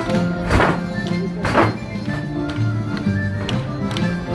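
Basque folk dance music with steady held notes, cut by two sharp knocks about half a second in and again a second later, struck by the dancers' wooden sticks.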